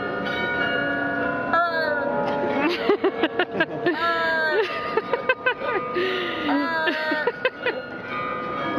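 A woman imitating a bird with her voice, a run of short squawks with sliding pitch, over the steady ringing of the tower glockenspiel's bells.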